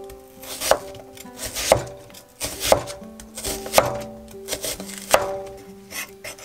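Chef's knife slicing half an onion into thin strips on an end-grain wooden cutting board: five crisp knife strokes, roughly one a second, each ending in a knock on the board.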